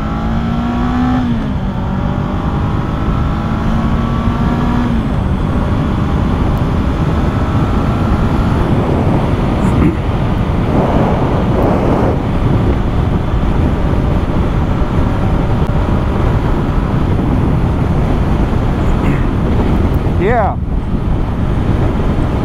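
2022 Honda CB500F's parallel-twin engine accelerating hard through the gears, its pitch rising and dropping back at upshifts about one and five seconds in, then climbing again. After that, wind and road noise at highway speed mostly cover the engine.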